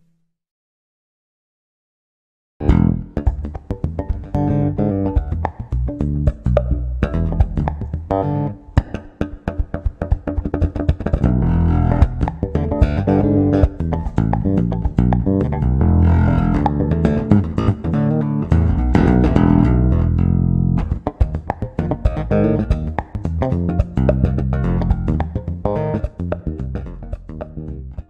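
Solo electric bass played with fast, percussive slap and pluck strokes in a dense rhythmic pattern, starting about two and a half seconds in.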